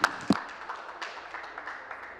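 Brief scattered applause: a few sharp hand claps in the first half second, then dying away into the room's background hum.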